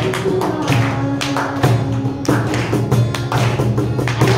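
Acoustic guitar strumming chords over cajon beats, an instrumental passage of the song without vocals.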